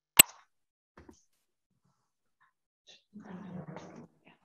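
A single loud, sharp pop a fraction of a second in, then a faint tick about a second later. Near the end a muffled low rumble of room noise comes in over an open video-call microphone.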